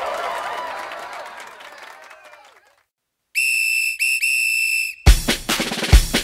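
Music with voices fades out over the first couple of seconds; after a brief silence a whistle sounds three times, two short blasts and one long one. A drum beat starts right after it, near the end.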